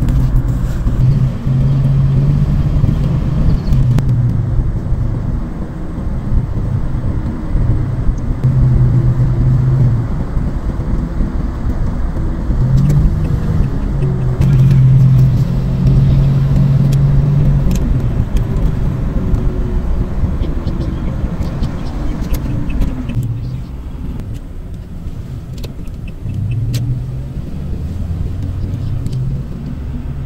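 Road noise heard from inside a moving car: a steady low rumble of engine and tyres in city traffic, with a humming drone that comes and goes. The rumble eases somewhat in the last several seconds.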